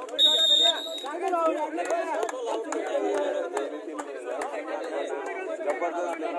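A referee's whistle blown once, a short, loud high blast lasting under a second near the start, over the continuous chatter and shouting of a large crowd of spectators.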